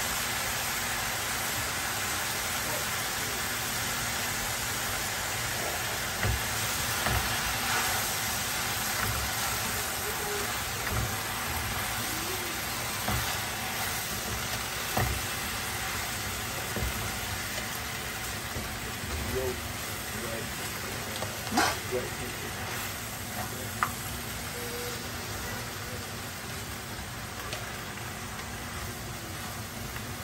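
Leafy greens stir-frying in a hot wok with a steady sizzle that eases slightly toward the end. A metal spatula turning the greens clicks and scrapes against the pan a few times, loudest about two-thirds of the way in.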